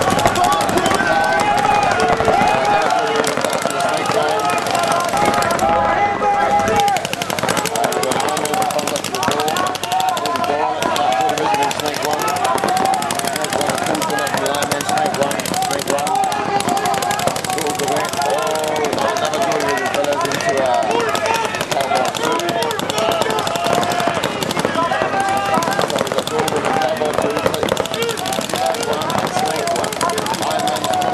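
Many paintball markers firing rapid streams of shots at once, making a continuous fast rattle, with voices shouting over it.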